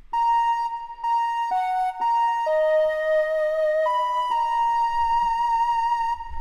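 Software flute instrument playing a short melody of about seven single notes, ending on a long held note with a slight vibrato.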